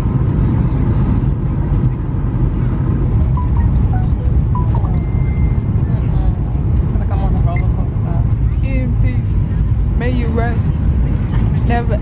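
Steady low rumble of an airliner cabin in flight as the plane comes down on approach, with music and a voice heard over it.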